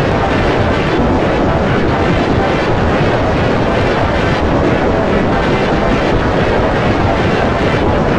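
Heavily processed, slowed and layered remix audio: a loud, dense, steady roar with no clear tune, beat or voice.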